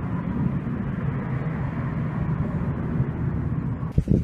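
Steady low engine rumble, like a vehicle running close by, cutting off suddenly at the end.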